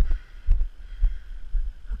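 Footsteps of a person walking over a grassy hillside: dull thuds about twice a second over a low rumble of wind on the microphone.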